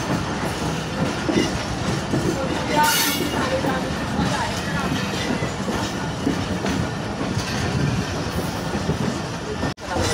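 Passenger train coaches running at speed, heard from on board: a steady rumble and clatter of wheels on the track. The sound cuts out for an instant near the end.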